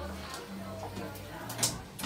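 Background music playing while the lift's two-speed sliding doors close, with a short sharp click about one and a half seconds in.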